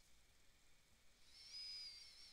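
Near silence, with a faint, steady, high whistle-like tone coming in a little past halfway and lasting about a second.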